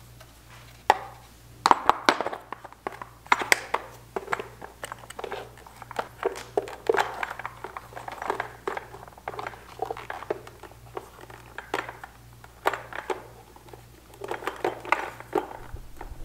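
Plastic airbox of a Honda CB750 being worked by hand onto the carburetors: irregular clicks, knocks and scraping of plastic against the carb intakes, the sharpest knocks about two seconds in.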